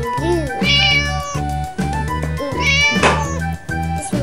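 Two high-pitched meows, about two seconds apart, over steady background music.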